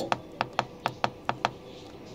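Plastic temperature buttons on a hotel-room wall heating and cooling unit being pressed repeatedly, giving about eight quick, sharp clicks in the first second and a half as the set temperature is stepped up.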